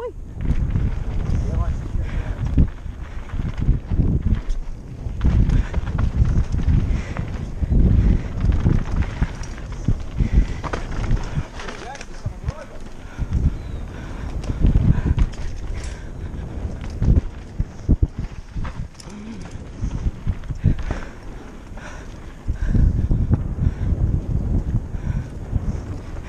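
Mountain bike ridden fast down a dirt singletrack, picked up by a helmet-mounted camera: tyre rumble over the dirt in uneven surges, with frequent knocks and rattles from the bike over bumps.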